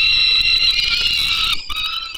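Peregrine falcon giving one long, wailing call that rises slightly in pitch and breaks off about one and a half seconds in, followed by shorter calls. This is calling at the nest as a parent brings prey to the chicks.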